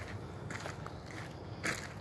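Faint footsteps of a person walking briskly on a woodland trail.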